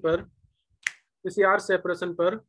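A man speaking, broken by a gap that holds a single short, sharp click, just under a second in.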